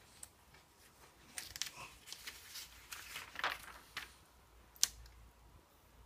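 Glossy magazine pages rustling and crinkling as they are turned, with one sharp paper snap near the end.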